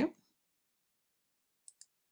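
Two quick computer mouse clicks close together, about a second and a half in, in an otherwise quiet room.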